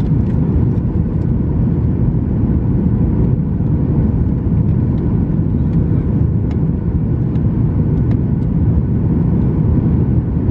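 Steady low rumble inside the cabin of a Boeing 737-900ER in flight: engine and airflow noise heard through the fuselage from a window seat near the wing.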